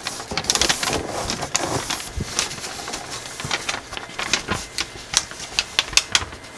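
Thin gold foil origami paper crinkling and crackling as it is folded and creased by hand. A denser rustle in the first two seconds gives way to scattered sharp crackles.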